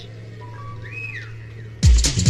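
Techno DJ mix intro: a steady low drone with a single whistle-like electronic tone that rises and falls about halfway through. Near the end a loud four-on-the-floor techno beat with heavy kick drums comes in suddenly.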